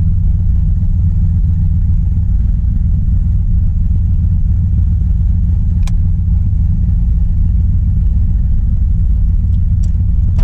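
Turbocharged Mazda RX-7's engine idling steadily with a low rumble, heard from inside the cabin. A sharp click comes about six seconds in, and two more near the end.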